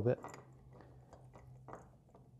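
Faint, scattered small clicks and scrapes of a screwdriver and lamp switch and socket parts being handled during wiring work.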